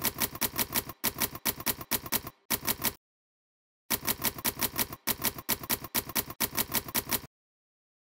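Manual typewriter keys striking in rapid runs, several strikes a second, in two bursts with a pause of about a second between them; the typing stops shortly before the end.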